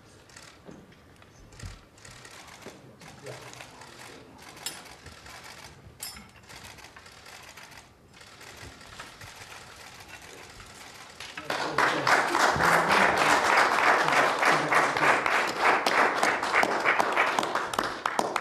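A small group of people applauding by hand. The applause starts suddenly about two-thirds of the way in and is loud; before it there are only faint scattered clicks.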